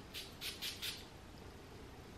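Perfume atomizer on a glass eau de parfum bottle spraying in about four short, quick hisses within the first second.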